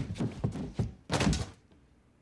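A quick series of heavy thuds and knocks from a film soundtrack, the loudest at the start. The sound drops out to near silence about one and a half seconds in.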